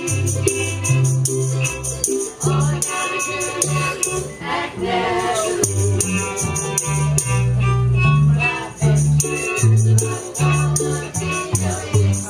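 Live acoustic string band playing a song: steadily strummed strings over a walking bass line, with voices singing.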